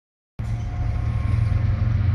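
Steady low rumble of diesel locomotive engines, with a few faint steady tones above it, starting about a third of a second in.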